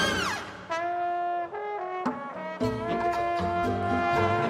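Trombone playing jazz with a high school big band. It opens with a loud falling slide, then holds single notes, and the rhythm section with bass and hand percussion comes in about two and a half seconds in.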